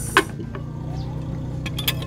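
A steady, low motor hum, with a few sharp clinks of cutlery on plates near the end.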